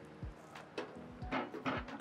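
Several light knocks and clicks as the metal base plate and bed assembly of a Kywoo Tycoon 3D printer is handled and set down on the table, with faint background music underneath.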